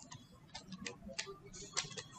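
About four short, sharp clicks from a computer mouse and keyboard as copied text is pasted into a document, the loudest near the end.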